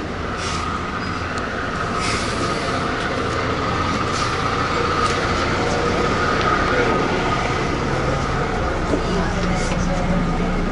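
Cabin running noise of an articulated transit vehicle pulling away: a steady low rumble with a faint whine that rises a little and holds, growing louder over the first few seconds.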